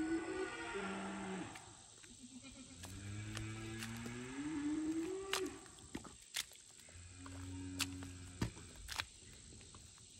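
Three long, low moos, the middle one rising in pitch, with a few sharp clicks in between.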